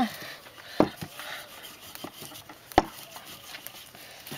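Wooden rolling pin rolling out thin dough on a floured tabletop: a soft rubbing hiss as it passes over the sheet, with two sharp knocks, about a second in and again near three seconds.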